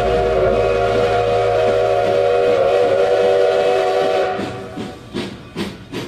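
Steam locomotive chime whistle blowing one long chord of several tones over a low rumble, cutting off about four seconds in. It is followed by a few separate puffs that fit a locomotive's exhaust.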